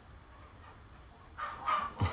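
Quiet room tone, then about one and a half seconds in a short, high-pitched, voice-like call lasting about half a second.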